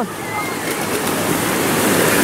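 Ocean surf: a large wave breaking and its whitewash rushing up the shallows, growing louder toward the end.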